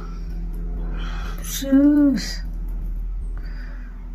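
A person's short wordless vocal sound, rising then falling in pitch, about halfway through, over a steady low hum.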